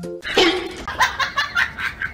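A small yellow rubber balloon bursts under a cat's paw with a sudden loud pop, followed by laughter in rapid short bursts.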